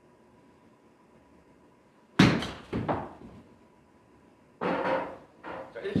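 A wedge striking golf balls off a hitting mat: one sharp, loud impact about two seconds in, followed half a second later by a second, softer smack.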